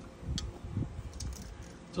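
A few light clicks and soft knocks of handling: a glass olive oil bottle being set down on the table and metal kitchen tongs being picked up.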